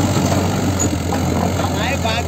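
Mahindra 575 DI tractor's diesel engine running under load as it pulls a trailer loaded with sand, a steady low drone.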